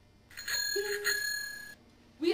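A small bell ringing with a bright metallic tone for about a second and a half, then cutting off suddenly.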